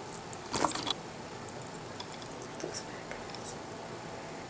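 Quiet sounds of hair being pinned up with bobby pins: faint small clicks and rustles. About half a second in there is a short breathy whisper.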